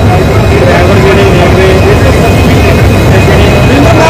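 Indian Railways diesel locomotive running at a standstill, a loud, steady engine noise, with people's voices faintly over it.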